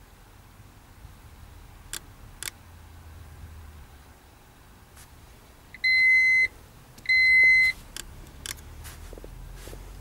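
Fluke 1625 earth ground tester giving two steady high-pitched beeps, each about half a second long with a short gap between, as a measurement is started from its Start Test button. A few sharp clicks come before and after the beeps.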